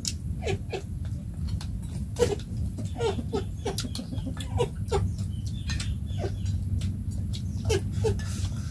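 Short animal calls, each sliding down in pitch, repeated at irregular intervals, with sharp clinks of chopsticks and spoons against metal bowls.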